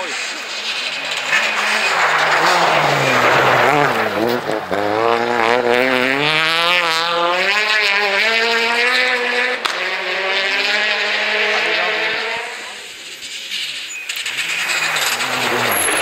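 Rally car engine at high revs on a snow stage, passing close. Its pitch drops as it goes by about four seconds in, then climbs again and again through the gears as it accelerates away. Near the end another car's engine rises as it approaches.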